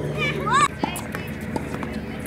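A child's high shout rising in pitch about half a second in, among sharp knocks of tennis balls struck by rackets and bouncing on the hard court.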